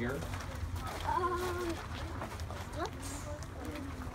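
Scattered voices of a group of children, short remarks and a "what?", over a steady low rumble.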